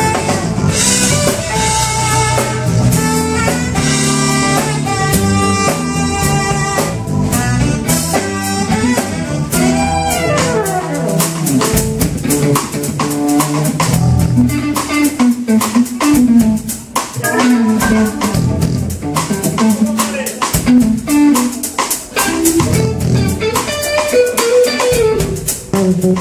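Live jazz band: a saxophone plays the melody over drum kit and electric guitar, closing its phrase with a falling run about ten seconds in. After that the electric guitar takes the lead over the drums.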